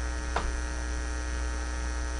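Steady electrical mains hum on the studio audio: a low drone with many faint steady tones above it. A brief faint sound comes about half a second in.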